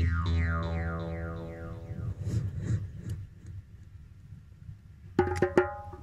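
Jaw harp's final note ringing out: a low drone with its overtones sliding downward, fading away over about three seconds. Near the end, a quick run of three or four sharp percussive strikes.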